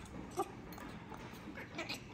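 A single short, soft vocal sound about half a second in, over quiet room tone, followed by faint clinks of utensils against a bowl near the end.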